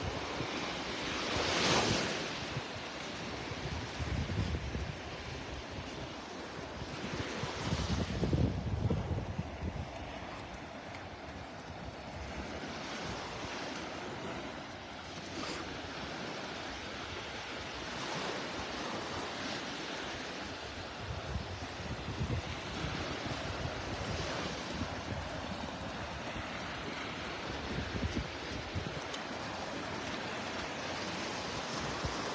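Small surf breaking and washing up the sand in a steady rush that swells and eases. Wind buffets the microphone now and then, strongest about two and eight seconds in.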